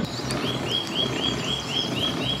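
A songbird calling a fast run of short, identical chirps, about four a second, starting about half a second in, over a steady low background noise.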